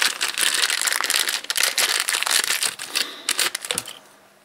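Clear plastic bag crinkling and crackling as a coiled cable is pulled out of it by hand, stopping near the end.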